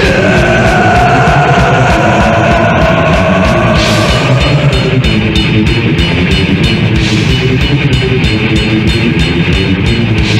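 Death/thrash metal band recording from an early-1990s tape: distorted guitars and fast drumming, loud and dense throughout. A long held high note slides slowly lower over the first four seconds or so.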